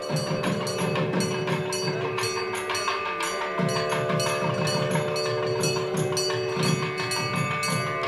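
Hindu temple bells struck in a fast, even rhythm of about four strokes a second, ringing over a steady held drone and drumming.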